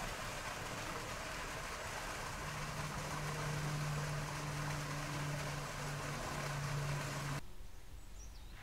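Steady outdoor rushing noise. From about two seconds in it is joined by a low, steady engine-like hum, and both stop abruptly shortly before the end.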